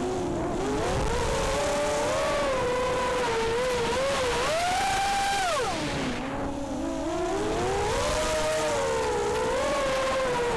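Brushless motors of a racing quadcopter (Cobra 2204 2300 kV) whining, several close pitches rising and falling together with the throttle. About six seconds in the pitch falls steeply as the throttle is cut, then climbs back.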